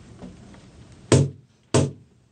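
A live acoustic band starts its song with sharp percussive strikes on the beat. The first comes about a second in and the second about two-thirds of a second later.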